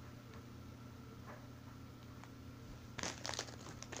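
Toy packaging crinkling as it is handled, starting about three seconds in, after a quiet stretch with a steady low hum and a few faint ticks.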